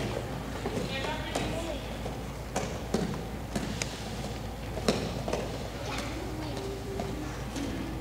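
Children's bare and stockinged feet thudding on gym mats and floor as they hop and land, with several sharp thuds in the middle stretch, over background chatter of children's voices.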